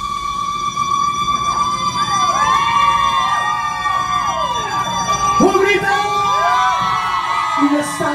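A live Tejano band holds a high sustained note while many overlapping siren-like swoops rise and fall over it, with no singing.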